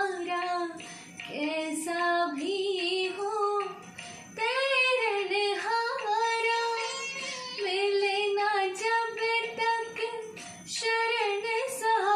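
A woman singing a devotional song to the guru in long, ornamented held notes with slides between pitches, over a backing track.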